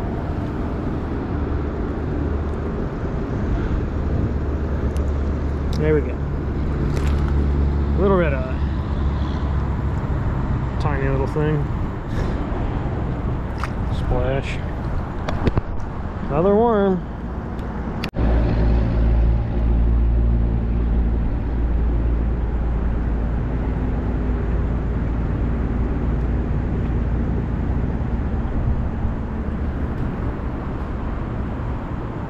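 Steady low rumble of city road traffic, with a faint engine hum in it.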